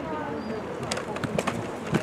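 A few short, sharp clacks about a second in, as football helmets and shoulder pads collide at the snap, over faint distant voices.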